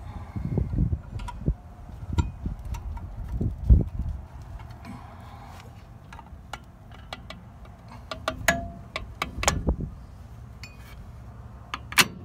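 Metal clinks and clicks from work on a drum brake assembly, with uneven low thumps of handling. The clicks bunch up about eight to ten seconds in.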